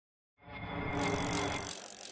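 Intro sound design: a noisy, slightly ticking swell with a few held tones that fades in about half a second in, brightens near one second and thins out toward the end, leading into the opening music.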